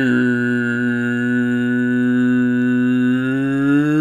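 A single low droning note, steady in pitch, held for about four seconds, as from a voice humming or chanting one tone.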